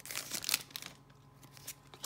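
Pokémon trading cards being handled by hand: a few short papery rustles and taps in the first half second, then quieter handling with small clicks.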